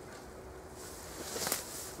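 Faint rustling as a person moves and turns among hop vines. The rustling grows about a second in, with one small click in the middle.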